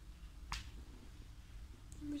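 A single sharp click about half a second in.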